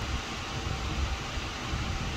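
Steady room noise: an even hiss with an uneven low rumble underneath.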